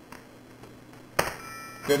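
A short chime: a sudden strike about a second in, followed by a ring of several high tones that fades in under a second.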